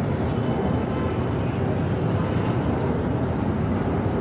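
Steady outdoor background noise, a low rumble with hiss, with no clear event standing out.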